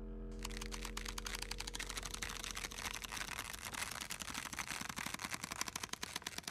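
Continuous-form printer paper being torn very slowly along its perforation, heard as a long run of tiny rapid rips and clicks. A low steady hum underneath fades out over the first few seconds.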